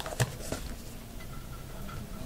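Two short clicks, a sharp one about a quarter second in and a weaker one about half a second in, from a metal table knife knocking against crockery while icing is spread on biscuits; faint room noise otherwise.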